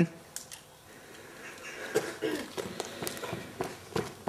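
Faint voices and a laugh, with a few light clicks and knocks, likely footsteps, growing a little louder from about two seconds in.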